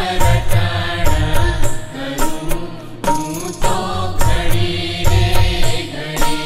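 Gujarati devotional bhajan to Shiva: chant-like singing over an instrumental backing with deep, repeated drum beats.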